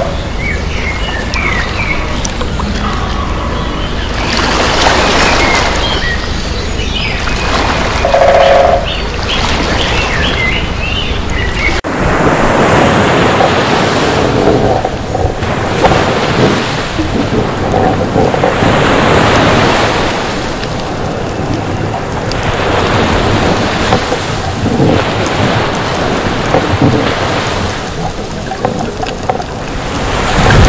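Loud rushing water noise with a few short high chirps. About twelve seconds in the sound changes abruptly to a surging wash that swells and fades every second or two.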